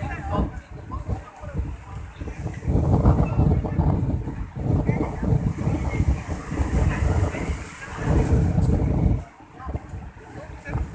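Heavy wind buffeting on the microphone in long gusts by the sea, over a crowd of people talking.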